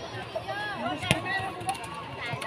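A single sharp slap of a volleyball being struck hard by hand, likely a serve, about a second in, over scattered shouts and voices from the crowd.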